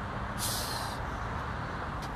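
Steady low rumble of a running vehicle engine, with one short hiss about half a second in.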